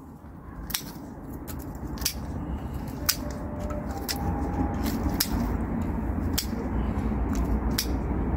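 Hand secateurs snipping through the bare woody stems of a hardy fuchsia, a sharp cut about once a second, under a low rumble that grows steadily louder.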